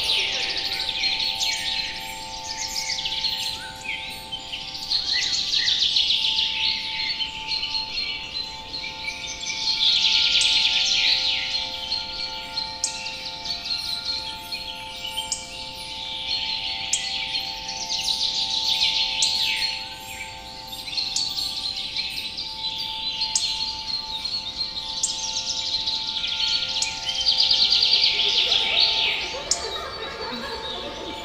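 Songbirds singing in a dense chorus that swells and fades every few seconds, over a steady drone of several held tones. A few short high ticks sparkle through it.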